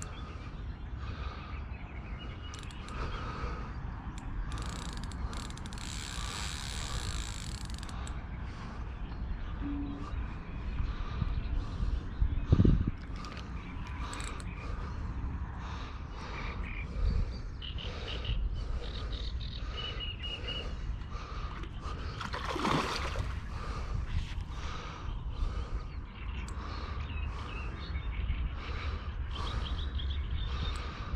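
Fixed-spool carp reel being wound while playing a hooked carp to the net, its mechanism clicking irregularly over a steady low rumble. A single louder thump comes about twelve seconds in.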